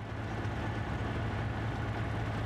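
Military vehicle engines running with a steady low drone, rising in at the start.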